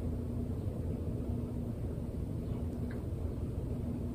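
Steady low rumble of background noise with a faint, broken hum and a couple of faint ticks; no distinct event stands out.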